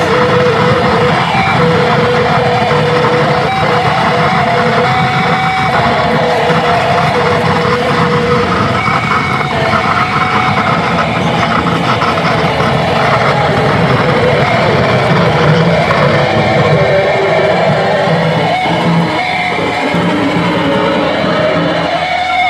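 Electric guitar played through a board of effects pedals and a small amplifier: a loud, unbroken wall of distorted noise with held droning tones.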